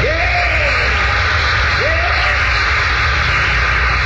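A congregation responding after a preacher's climactic line: a few voices shout out, one right at the start and another about two seconds in, over a steady loud hiss and low hum from an old recording.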